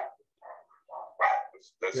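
A dog barking, a few short separate barks.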